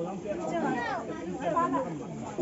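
Chatter of several voices talking over one another, the words not made out.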